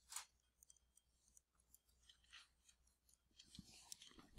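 Near silence, broken by a few faint, short scratches of a stylus writing on a tablet screen.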